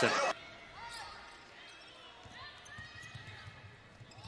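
Faint basketball court sounds under low arena noise: a ball dribbling on a hardwood floor and a few short sneaker squeaks.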